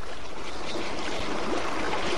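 Underwater water sound: a steady, dense rush of churning water, dotted with small bubbling pops.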